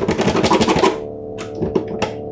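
A metal key rattling and jiggling in an old wooden cabinet's lock: a fast run of clicks for about the first second, then a few more clicks near the end, over a sustained musical drone.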